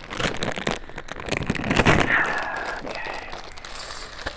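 Small plastic building bricks poured out of a plastic bag into a stainless steel bowl: a dense clattering rattle of pieces hitting the metal and each other, loudest about two seconds in, with the bag crinkling. Just after the peak the bowl gives a short metallic ring.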